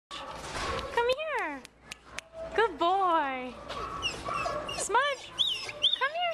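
Dogs whining and yelping in a run of high cries, each rising then falling in pitch, with sharp clicks between them.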